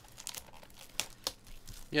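Plastic wrapping crinkling and tearing as a sealed box of trading-card packs is opened by hand: a handful of sharp, separate crackles.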